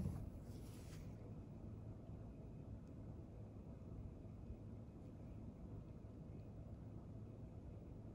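Faint room tone: a low steady hum, with a brief soft rustle in the first second.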